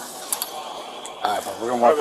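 A brief sharp mechanical click about a third of a second in, then a voice speaking briefly near the end, which is the loudest part.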